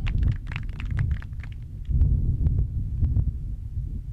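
Low, irregular rumbling thumps picked up by an outdoor microphone, with scattered sharp clicks, strongest at the start and again about two seconds in.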